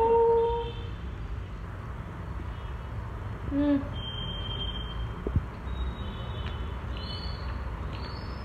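A woman eating a soft glazed doughnut: a held hummed voice sound at the start and a shorter one near the middle as she tastes it, over a faint steady low hum. There is one sharp click a little after five seconds.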